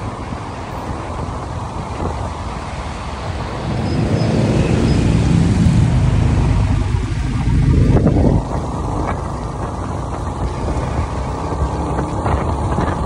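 Motorbike riding through city traffic: engine and road noise with wind rushing over the microphone, louder for about four seconds in the middle.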